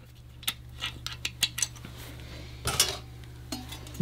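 Light metallic clicks and clinks of dog-bone link bars being set onto pairs of roller lifters in an engine block, with a louder metal clatter a little under three seconds in. A low steady hum runs underneath.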